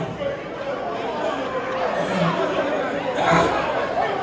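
Crowd chatter: many people talking at once, with no single voice clear.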